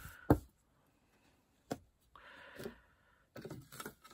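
Hands handling and smoothing a dried baby wipe flat on a craft mat: one sharp knock just after the start, then a soft rustle of the wipe being rubbed down, with a few light taps.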